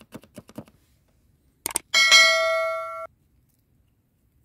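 A few light knife taps on a cutting board while slicing a chili, then two sharp clicks and a loud bright bell ding that rings for about a second and cuts off suddenly: a subscribe-button notification-bell sound effect.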